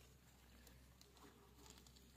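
Near silence, with faint rustling and a few light ticks of ghatkol leaves and stems being handled.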